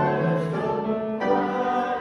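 Congregation singing a hymn in slow, held chords with keyboard accompaniment.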